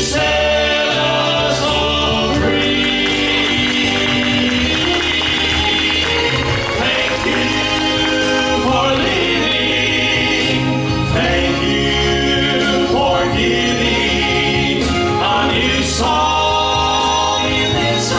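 Male Southern Gospel quartet singing a gospel song in harmony, four men's voices through microphones.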